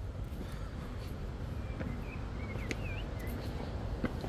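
A few faint bird chirps, short curling whistled notes around the middle, over a steady low outdoor rumble.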